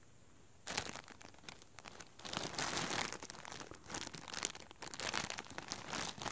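Clear plastic poly bag crinkling and crackling in irregular bursts as hands squeeze and handle the flannel shirt sealed inside it, starting under a second in.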